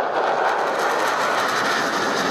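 F-16 fighter jet flying overhead: a loud, steady rush of jet engine noise.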